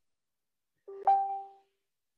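A single short electronic chime about a second in: two steady tones, one an octave above the other, starting sharply and fading out within half a second.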